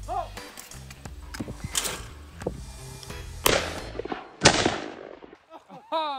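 Two shotgun shots at a clay target, about a second apart, the second the louder.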